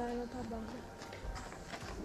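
A faint voice speaking briefly near the start, then a few soft knocks or taps.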